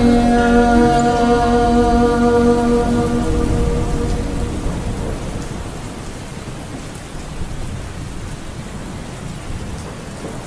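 The song's last held note dies away over a rain-and-thunder ambience. The steady rain with low thunder rumble carries on alone, slowly fading out.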